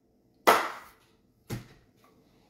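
Two short, sharp sounds about a second apart in a quiet pause. The first is louder and fades over a fraction of a second; the second is a brief, sharper knock.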